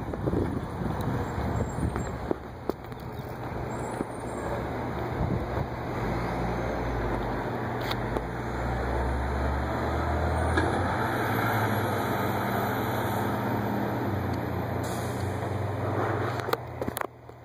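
Thomas school bus engine running as the bus drives away, a steady low drone that grows stronger partway through.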